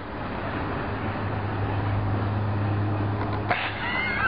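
A car's engine hum and tyre noise growing louder as it comes down the steep street, with a sudden louder wash of noise near the end.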